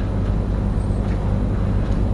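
Steady low electrical hum with a constant hiss: the hall's room tone, with nothing else happening.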